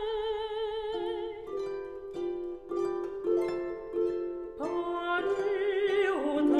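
Concert harp plucking a slow run of single notes under a mezzo-soprano's voice. The voice holds a note with vibrato that fades about a second in, and it swoops back up into another held note near the end.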